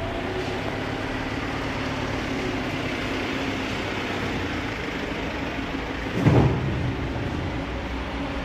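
Steady mechanical rumble, like a running engine or nearby traffic, with one louder low thump about six seconds in.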